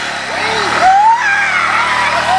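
Men's voices shouting and whooping in long, swooping calls over a motorcycle engine running underneath.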